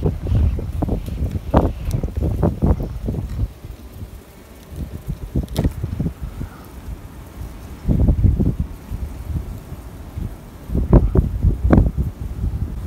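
Wind buffeting the microphone in uneven gusts, with a few light knocks as the wooden hive frames and hive tool are handled.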